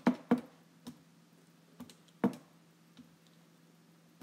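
Keys pressed on a calculator as a figure is punched in: about six separate clicks, unevenly spaced, the sharpest right at the start and a little past two seconds, over a faint steady low hum.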